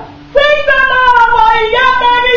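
A high-pitched voice singing a long held note that sags slightly in pitch, then steps up to a new note near the end; it comes in after a brief breath pause at the start.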